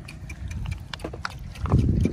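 Hands and legs moving in shallow muddy water while snails are groped for in the mud: small wet clicks and splashes, then a heavy low slosh near the end.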